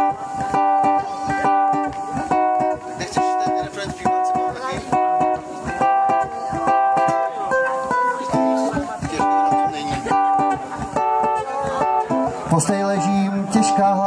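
Ukulele strummed in a steady, choppy rhythm with repeated chords: the instrumental opening of a reggae song. A lower held tone joins near the end.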